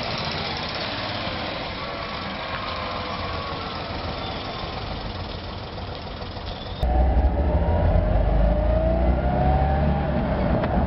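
Mazda R360's small air-cooled V-twin engine running as the car drives along a street. About seven seconds in, the sound jumps to inside the cabin: louder, with a deep rumble, and the engine note rising as the car accelerates.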